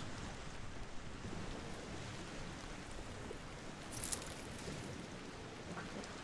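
Steady soft wash of lake water lapping among ice floes, with a brief hiss about four seconds in.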